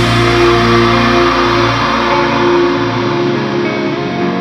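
Metal band recording at a break: the drums have stopped and held guitar chords ring on and fade. The deep bass drops away near the end, leading into a quieter, echoing guitar passage.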